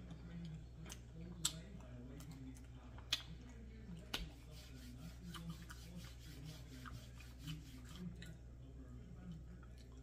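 Close-up eating sounds: a person chewing a chopped cheese slider on a soft roll, with small mouth clicks and smacks, three of them sharper in the first half, over a steady low hum.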